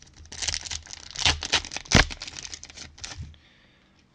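Foil wrapper of a baseball card pack being torn open and crinkled by hand: a run of crackling rustles with one sharp rip about two seconds in, stopping a little after three seconds.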